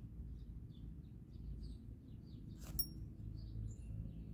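Faint outdoor background: a steady low rumble with scattered small bird chirps, and one short click about three-quarters of the way through.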